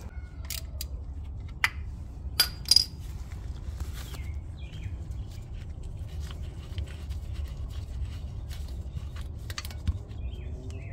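Sharp metallic clicks and clinks of a hand wrench being worked on the rear differential's fill plug, loudest about two and a half seconds in and again near the end, over a steady low hum.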